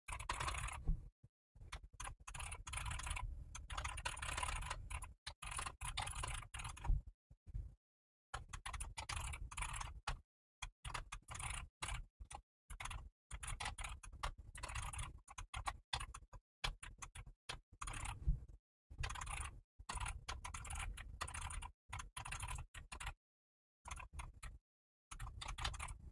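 Computer keyboard typing in quick runs of keystrokes, broken by short pauses.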